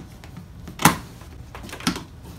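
Scissors cutting through the packing tape on a large cardboard box: two sharp snips, the louder one about a second in.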